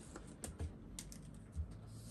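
Faint, scattered light clicks and plastic rustling from a clear plastic cash-envelope sleeve holding banknotes being laid back into a ring binder, with a pen being picked up.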